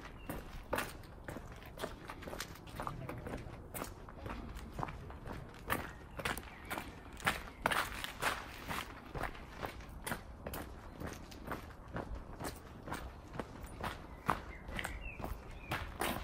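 Footsteps on a cobblestone street at a steady walking pace, each step a short scuffing click on the stones.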